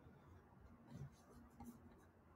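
Near silence: faint room noise, with a few soft, brief scratchy sounds clustered in the middle and latter part.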